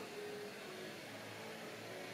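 Faint room tone: a quiet steady hiss with a low hum.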